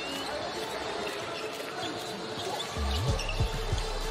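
A basketball being dribbled on a hardwood court over steady arena background noise, with several low thuds of the ball bouncing in the last second or so.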